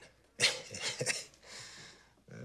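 A man laughing in breathy, wheezy bursts that start suddenly about half a second in and trail off.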